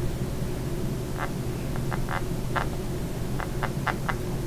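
Sharpie marker writing a signature on paper: about ten short, separate scratching strokes from about a second in, over a steady low background hum.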